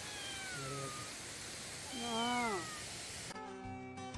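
A tabby cat meowing twice over a steady hiss. The first meow is thinner and falls in pitch; the second, about two seconds in, is louder and rises then falls. Guitar music cuts back in near the end.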